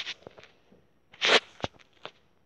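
Handling noise close to the microphone as a plush toy's paper hang tag is held up to the camera: a short rustle at the start, a longer rustle just past a second in, then a few light clicks.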